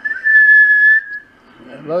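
A single steady whistle held for about a second, sliding up slightly as it starts. It is whistled into the microphone of a homebuilt double sideband transmitter as a test signal.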